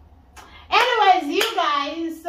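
A high-pitched voice starting up after a short quiet moment, its pitch rising and falling, with one sharp smack of hands a little over halfway through.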